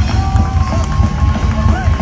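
Hardcore band playing live and loud: pounding drums and bass under held, bending distorted guitar notes.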